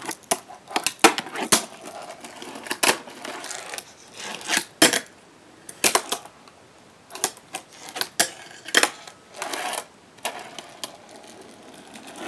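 Fingerboard working a homemade fingerboard park: an irregular string of sharp pops, clacks and landings from ollies and flip tricks, broken by a few short scraping grinds and slides along the rails and ledges.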